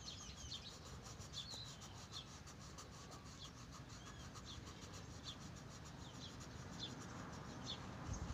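Coloured pencil shading on lined notebook paper: a faint, quick back-and-forth scratching of pencil strokes. Small birds chirp faintly now and then in the background.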